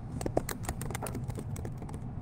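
Typing on a computer keyboard: a quick, uneven run of key clicks as an email address is entered.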